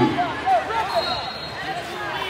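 Wrestling shoes squeaking on the rubber mat in a large echoing hall: a quick scatter of short, high chirps with a couple of soft knocks among them.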